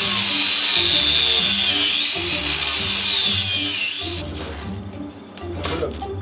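Handheld angle grinder grinding steel, its high whine wavering up and down in pitch as it bites, stopping about four seconds in. Background music plays underneath.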